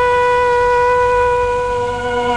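Instrumental film-song introduction: a wind instrument holds one long, steady note, and a lower note joins in near the end.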